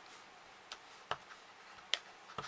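A few light taps of a clear acrylic stamp block being dabbed onto an ink pad, the sharpest one near the end.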